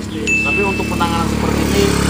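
A motorcycle engine running, its low steady drone swelling in the first half second and then holding. A short high steady tone sounds over it for under a second, starting about a quarter second in.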